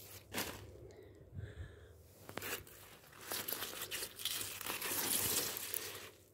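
Leafy radish tops rustling and crackling as a large green Margelan radish is pulled from the bed and handled among the plants, louder in the second half.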